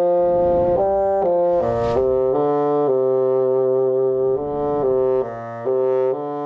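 Solo bassoon playing a melody, one note at a time: a run of about eight notes, one of them held for about a second and a half in the middle.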